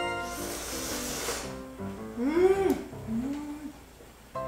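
A person slurping ramen noodles from chopsticks: a hissy slurp in the first second or so, then two hummed sounds that rise and fall in pitch, over background music.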